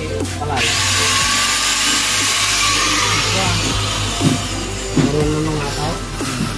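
Aerosol spray-paint can hissing in one long spray of about four seconds, starting about half a second in, as black paint goes onto a welded steel bracket.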